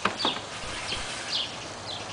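Two quick knocks as the wooden-framed plexiglass cover of a solar dehydrator is handled, then several short, falling high chirps from birds in the background.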